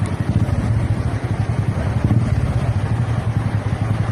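A small engine, likely a motorcycle, running steadily at idle with an even low hum. A constant rushing hiss from rain and running floodwater lies underneath.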